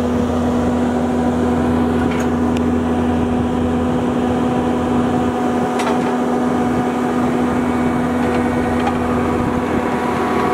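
Cat compact track loader's diesel engine running steadily with a constant drone and hum, a few faint clicks over it.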